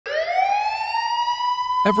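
Emergency vehicle siren winding up: one tone rising in pitch for about a second and a half, then holding steady.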